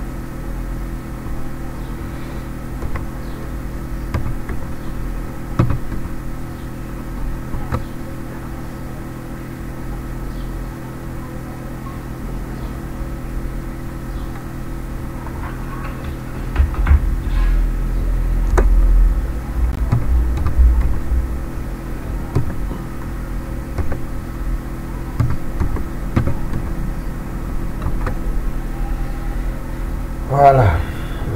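Scattered computer keyboard keystrokes over a steady electrical hum made of several fixed tones. A low rumble swells for a few seconds about halfway through.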